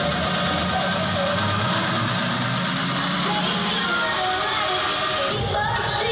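Electronic dance music from a DJ set over a nightclub sound system, with a voice over it. The pulsing beat gives way to a sustained bass and sweeping sounds, like a breakdown in the track.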